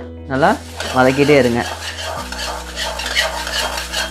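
Steel ladle stirring and scraping dry red chillies and fenugreek seeds around an aluminium kadai as they dry-roast without oil: a dense rustling scrape that takes over about a second and a half in, after a short spoken phrase.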